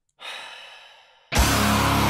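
A man's long, breathy sigh that fades away, then about a second and a half in a sudden, loud, distorted heavy-metal-style scream that holds at one level.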